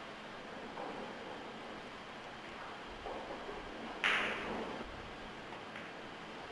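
Hush of a pool tournament hall, with one short, sharp hit about four seconds in: the cue tip striking the cue ball on a thin cut shot at the nine ball.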